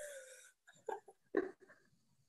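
Soft, breathy laughter and breaths from people on a video call: a short falling 'ooh'-like sound at the start, then a few brief chuckles about a second in.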